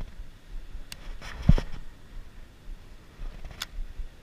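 Handling noise from a Shimano Scorpion BFS baitcasting reel and rod: a click about a second in, a short cluster of clicks with a thump about a second and a half in, and a sharp click near the end as the hand goes to the crank handle, over a low, irregular rumble.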